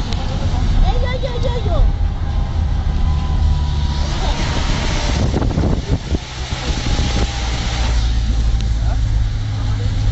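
Steady low rumble of a moving vehicle's engine and road noise, heard from inside the cabin.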